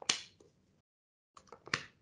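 Tarot cards being handled and laid down: a sharp snap at the start and another near the end, with a few softer ticks just before the second.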